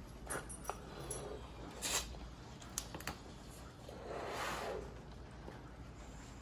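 A latex balloon being blown up by mouth: breaths of air, a short one about two seconds in and a longer one of about a second near the middle, with a few faint clicks in between.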